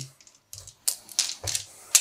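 A few small plastic six-sided dice clicking against each other, a handful of separate clicks, as they are scooped off the mat and gathered in the hand ready for a roll.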